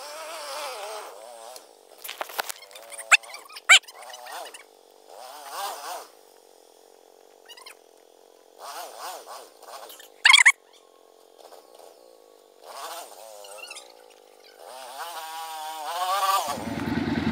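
Quad bike (ATV) engines revving in short bursts, their pitch rising and falling. Sharp clicks come about three and four seconds in, and a loud short crack about ten seconds in.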